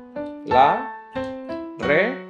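Digital piano playing a Cuban cha-cha-chá tumbao: short chord stabs in both hands in a syncopated, offbeat rhythm, about six attacks. The tumbao is harmonized with chord inversions, which gives it a fuller, closer sound.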